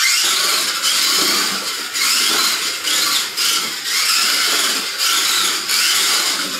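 Mini-Z 1:28-scale front-wheel-drive RC car driving fast: its small electric motor and gears give a high-pitched whine that rises and falls as the throttle is worked, with brief dips as it eases off into corners.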